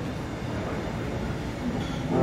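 A short gap in the piano and flute music, filled by the club's steady low rumble and hiss of room noise as the last notes die away.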